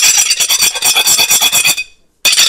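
Steel spoon rubbed hard back and forth across the gold-trimmed rim of a ceramic dinner plate in rapid strokes, the plate ringing with a steady high tone. It is a scratch test of the gold trim. The scraping stops near the end.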